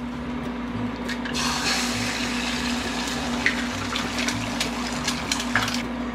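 An egg frying in hot oil in a small pan, sizzling and crackling; the sizzle sets in about a second and a half in, once the cracked egg is in the oil. A steady low hum runs underneath.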